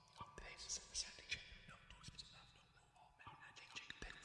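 Quiet, computer-processed whispering from a baritone voice: scattered short hisses and breathy fragments with no clear words.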